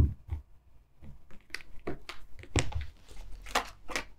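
A tarot deck being handled and a card drawn and laid on the table: a string of soft taps and card slides, the sharpest tap at the very start.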